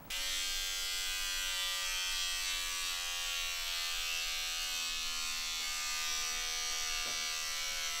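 Electric beard trimmer buzzing steadily as it is run over a beard, its pitch dipping slightly about three seconds in.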